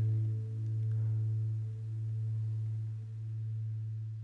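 The last sustained low note of a song's ending, held on an electronic instrument, swelling and dipping about every second and a half and slowly fading away. Fainter higher notes die out above it.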